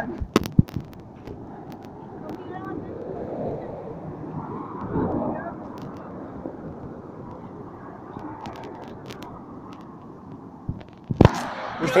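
Steady road traffic noise, swelling as a vehicle passes about four to five seconds in, with a few sharp clicks near the start and a louder knock near the end.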